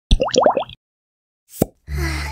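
Cartoon sound effects for an animated logo intro: a quick run of four rising pops, then silence, then a single short hit about a second and a half in. Steady background music comes in just at the end.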